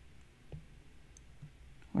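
Quiet room tone with a few faint clicks: one about half a second in, a smaller one near a second and a half.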